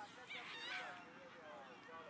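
Faint, distant shouting voices, high-pitched and brief, with the loudest calls in the first second.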